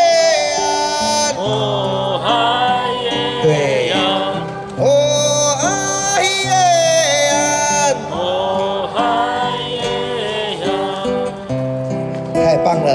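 A man singing a slow melody with long held notes, accompanying himself on a nylon-string classical guitar.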